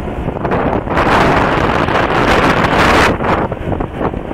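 Wind buffeting the microphone on a moving motorcycle, over the bike's engine and road noise, with a stronger gust from about one to three seconds in.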